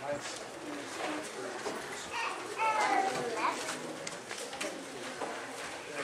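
Indistinct voices murmuring in a room, with a high-pitched child's voice rising and falling about two to three seconds in, and scattered light knocks.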